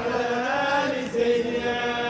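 A group of men chanting a devotional song together, with long held notes in unison.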